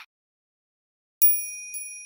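A high-pitched bell chime struck twice, about half a second apart, starting a little over a second in; the bright ringing tones die away slowly after the second strike.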